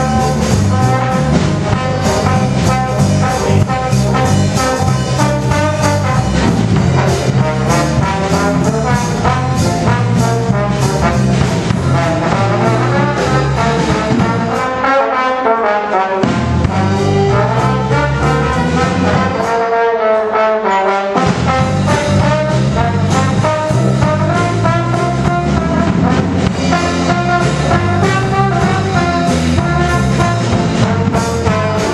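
Traditional jazz band playing live: brass horns out front over piano and drums. Twice, about halfway through, the low rhythm drops out for a moment while the horns carry on, like stop-time breaks.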